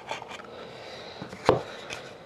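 Hands handling a stack of trading cards and their hard case, with light rubbing and small clicks and one sharp tap about one and a half seconds in as the card stack is set down on the table.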